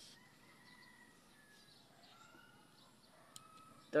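Quiet outdoor stretch with faint, distant bird calls drawn out in pitch, and one small sharp click a little past three seconds in.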